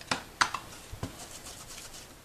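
Plastic Distress Ink pad case and a foam ink blending tool being handled on a craft mat: a few light clicks and knocks in the first second, then faint small ticks and rubbing.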